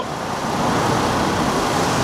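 Road traffic: a steady hiss of car tyres and engines passing on a multi-lane road.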